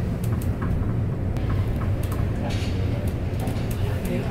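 CN Tower glass-front elevator climbing: a steady low rumble with a few faint ticks.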